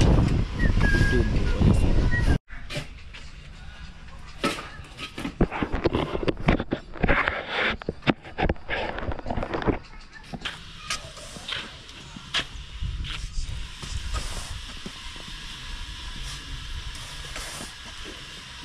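Hand digging in sandy soil: irregular strikes and scrapes of a hoe and shovel cutting and throwing earth, loudest in the middle stretch and thinning out toward the end.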